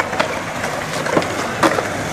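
Skateboard wheels rolling on a concrete skatepark surface, with a few sharp clacks of boards hitting the concrete, the loudest a little past the middle.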